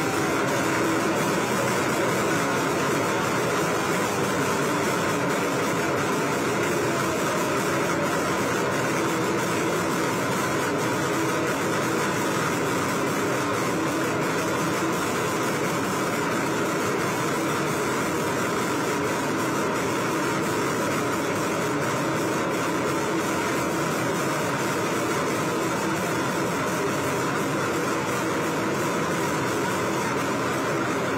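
An engine running steadily, an even hum that does not change.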